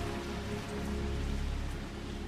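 Ambient background music with sustained low held notes, fading, over a steady rushing hiss of water like rain or surf.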